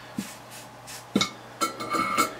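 Light clicks of small hard objects set down on a workbench, the last ones followed by a brief metallic ringing tone near the end.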